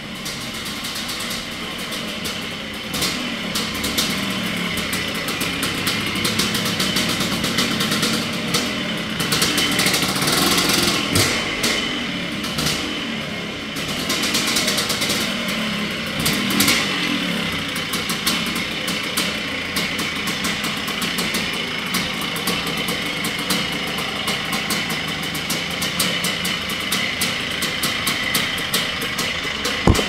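1976 Honda CR250M Elsinore's single-cylinder two-stroke engine running as the bike is ridden, getting louder over the first few seconds as it comes closer, with throttle changes along the way.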